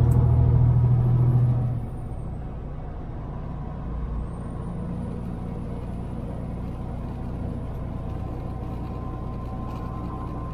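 Semi truck's diesel engine and road noise droning steadily, heard from inside the cab while driving. A louder low hum for the first couple of seconds drops to a quieter, even drone.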